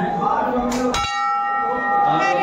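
Brass temple bell rung by hand: its clapper strikes once about a second in, and the bell then rings on with a steady, layered tone.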